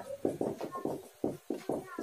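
Marker writing on a whiteboard: a quick run of short strokes, about six a second.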